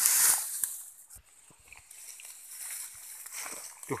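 Water splashing and sloshing as a wire-mesh fish trap is moved in shallow stream water, loudest right at the start. Then quieter rustling with small knocks.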